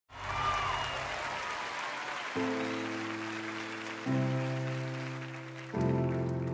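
Audience applause with a few whistles, dying away as a piano plays slow held chords, the first about two seconds in and then one every second and a half or so.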